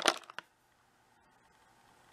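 A few light clicks of plastic lipstick and lip-gloss tubes knocking together as one is pulled out of a plastic drawer, in the first half-second, then near silence.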